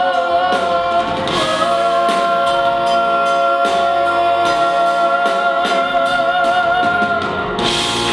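A female singer holds one long final note with vibrato over a live pop band with drums, closing the song. A sudden wash of noise comes in near the end as the music finishes.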